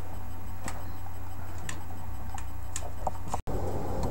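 A few scattered light plastic clicks and taps from a TV remote being handled as its batteries are taken out, over a steady low hum. The sound drops out for an instant near the end.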